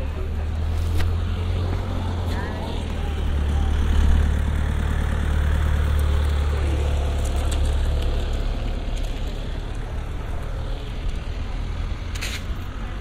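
Street ambience dominated by the low, steady rumble of a motor vehicle close by, swelling about four seconds in and then easing off, with faint voices of people around.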